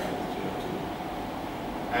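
Steady background room noise, an even rumble and hiss, filling a short pause in a man's speech.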